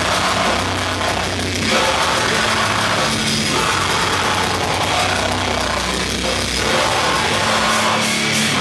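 Live heavy metal band playing: distorted guitars, bass and drums in a slow riff of held low notes, with vocals over the top.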